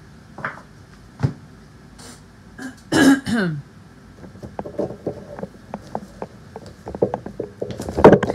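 A woman clears her throat with a short cough about three seconds in. Before it there is a single click, and after it a string of light clicks and taps from tarot cards being handled.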